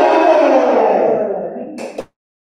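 A group of children shouting their cheer together over a video call, the voices drawing out one long falling note that fades, then a sharp click as the sound cuts off near the end.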